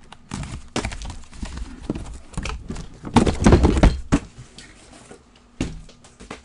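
A cardboard shipping case being opened and handled on a table: scraping, tearing and repeated knocks, loudest and busiest between about three and four seconds in.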